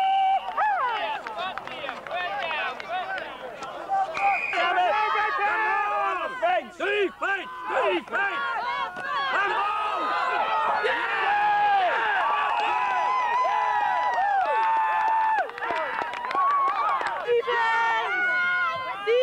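Many voices shouting and calling out at once, overlapping throughout, from the people on the sideline of an amateur American football game. There is a brief lull about seven seconds in.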